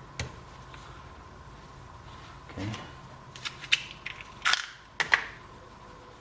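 Handling noise of hard plastic parts on a workbench: a few sharp clicks and knocks, bunched in the second half, as PVC pipe fittings and a roll of Teflon tape are put down and picked up. A faint steady hum sits underneath.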